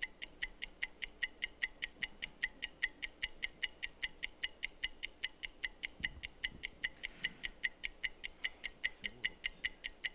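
Game-show countdown timer sound effect: an even, high-pitched electronic ticking, about four ticks a second, marking the seconds left to answer.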